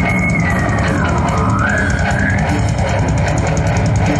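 Live rock band playing: electric guitars, bass guitar and drum kit at a loud, steady level, with rapid drumming. A high held note slides down and back up about a second in.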